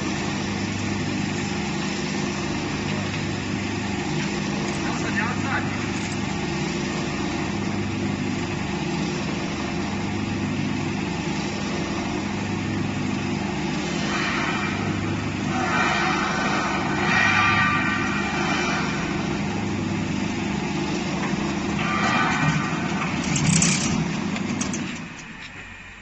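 Steel-strip spiral coiling machine running as its powered rollers bend flat strip into a coil. It gives a steady hum with a slow, regular low throb, then stops about a second before the end.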